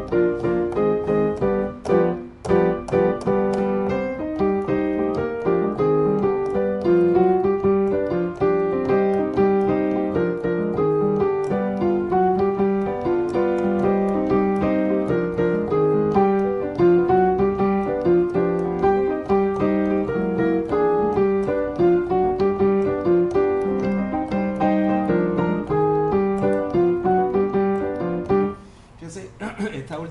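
Salsa piano montuno: repeated, syncopated chords in both hands cycling through the descending four-chord Andalusian cadence in C minor, each pass ending on G7. The playing stops shortly before the end.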